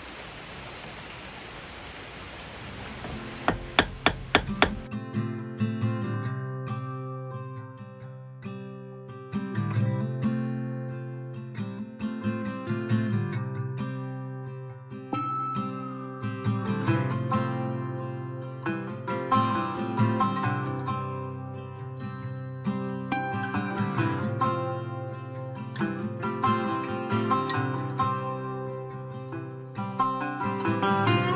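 Faint room hiss, then about five quick sharp taps of a 25-point carbide-tipped bush hammer dressing a millstone, three to four seconds in. After that, plucked-string background music takes over for the rest.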